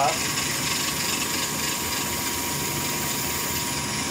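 Hardinge DV-59 lathe running steadily, a low hum with a thin steady tone above it, while a cut-off tool parts off a grade 5 titanium part.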